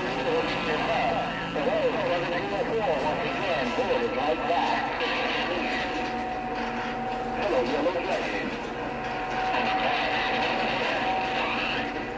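CB radio receiver playing garbled, overlapping distant voices coming in on skip, with warbling whistles over a steady hiss. A steady tone sets in about halfway through.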